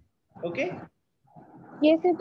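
A brief vocal sound about half a second in, between short silences, then a person's voice starting up again near the end.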